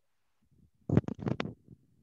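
A short cluster of knocks and low rumbling handling noise about a second in, picked up by a microphone, then fading away.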